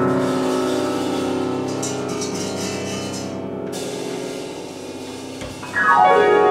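Live duo of grand piano and drum kit. A piano chord keeps ringing and slowly fades. A metallic cymbal shimmer comes in about two seconds in and stops a second and a half later, and a fresh run of piano notes starts just before the end.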